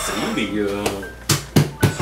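A person's voice briefly, then three sharp knocks in quick succession: a dinner plate knocking against a tabletop as a German shepherd licks and pushes it.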